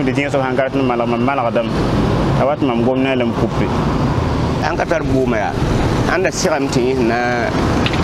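A man talking in Mooré, with a steady low rumble of street traffic underneath.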